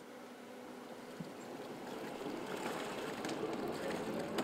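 Faint steady ambience of a boat moored on calm water: a low hum and soft noise that slowly grows louder, with a light tap about a second in.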